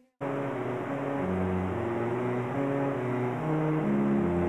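Slow background music of low bowed strings, cello and double bass, holding long overlapping notes. It begins abruptly just after a moment of silence.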